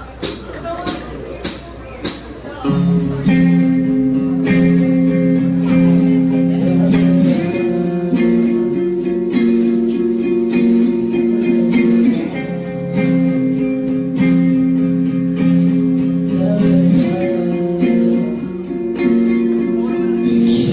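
Four evenly spaced clicks counting in, then a live band starting a song about three seconds in: electric guitar with held chords, changing chord roughly every five seconds.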